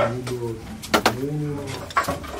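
A man's voice making two drawn-out low hums, each about half a second long, rising and falling slightly. Two sharp knocks about a second apart, from wood being handled.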